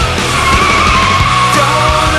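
Heavy rock music with a car's tires squealing through a corner over it: one drawn-out squeal that sags in pitch and then rises again.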